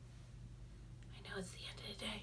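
A woman whispering a few words under her breath, starting about a second in, over a faint steady low hum.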